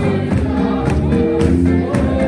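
A congregation singing a gospel song together, with instrumental backing and a steady beat of about two strokes a second.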